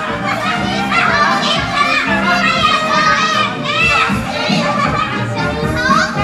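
High-pitched voices of child characters calling out and chattering over instrumental backing music.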